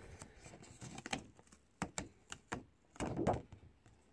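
Cut cardstock being peeled off an adhesive cutting mat: faint scattered clicks and crackles as it pulls free, with a louder crackling pull about three seconds in.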